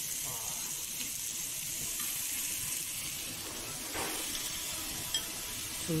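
Meat and bean sprouts sizzling on a domed jingisukan grill pan, a steady hiss.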